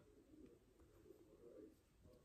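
Near silence: room tone with a faint low murmur.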